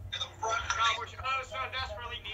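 Speech from a television broadcast heard through the TV's speaker, with a steady low hum underneath.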